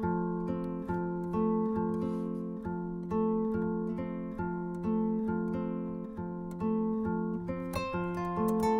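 Solo kora, the West African 21-string harp-lute, plucked by hand: a repeating low bass pattern with a higher melody running over it, the notes ringing on in a continuous flow.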